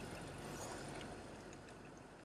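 Faint, steady background noise with no distinct sound event, easing off slightly near the end.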